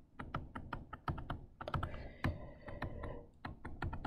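Stylus tapping and scratching on a tablet screen during handwriting: irregular light clicks, several a second.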